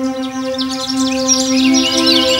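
A held new-age synthesizer chord with many birds chirping over it, the birdsong swelling up about half a second in while the chord shifts to a new note near the end.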